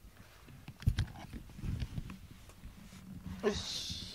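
A pet cat makes a short vocal sound near the end, over rustling and soft low thumps from the cat moving about and being handled close to the microphone.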